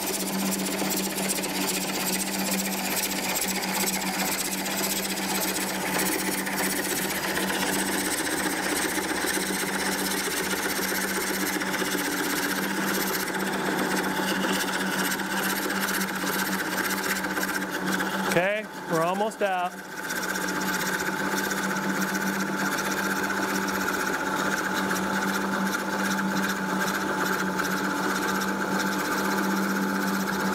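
Wood lathe running at low speed while a McNaughton Center Saver coring blade cuts a curved kerf deep into a spinning wet bowl blank. The cutting noise is steady over the motor's hum and breaks off briefly about two-thirds of the way through.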